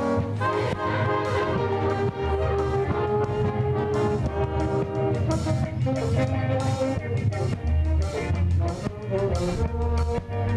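Brass band playing a slow piece in sustained, held chords over a steady bass line.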